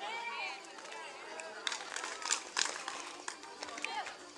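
Several voices of a group outdoors, calling out and talking at a distance, with a few short, sharp sounds in the middle.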